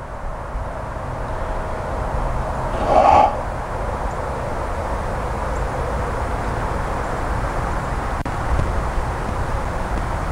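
A single short bird call about three seconds in, over a steady outdoor background noise.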